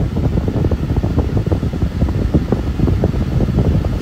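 Steady rushing of a car's air-conditioning blower inside the cabin, with scattered soft knocks and rustles.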